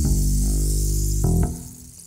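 Double bass and acoustic guitar playing: a low note held steady for over a second, then a short higher note, and the sound dies away toward the end.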